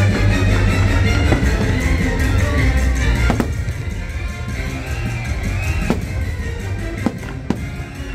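Fireworks show soundtrack music played loud with heavy bass, and fireworks going off over it: four sharp bangs in the second half.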